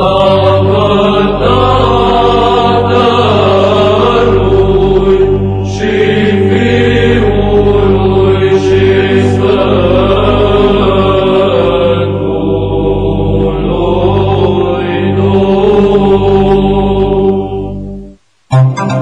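Orthodox-style choral chant, voices singing a melody over a steady held drone. It starts abruptly and fades out at the end.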